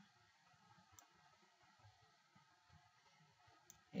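Near silence with two faint computer mouse clicks, about a second in and near the end.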